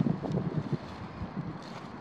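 Wind noise on the microphone: an uneven, rumbling rush of outdoor air with no distinct events.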